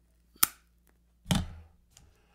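A cigarette lighter clicking once, a single sharp, very brief click, as a cigarette is lit. About a second later comes a louder, duller short sound with a low rush that fades quickly.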